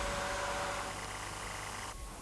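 Faint, steady background noise with a low hum, easing slightly in level.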